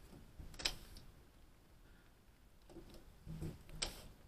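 Two sharp clicks about three seconds apart, the second near the end, against a quiet background.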